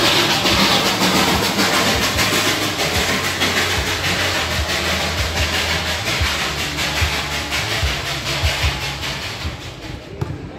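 Darjeeling Himalayan Railway toy train passing close by, its narrow-gauge coaches rolling with a loud, steady rumble and a dense run of clicks, fading near the end.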